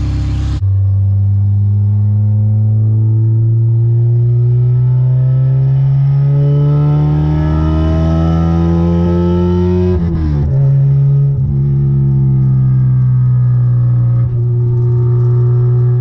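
Honda K24 inline-four with an open-cone Hybrid Racing intake, heard from inside the Integra's cabin, pulling steadily with its pitch climbing for about ten seconds. It then drops at a gear change and runs at a nearly steady cruise.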